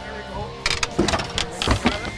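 Background music playing steadily, with a cluster of short, sharp noisy bursts from about half a second in to near the end.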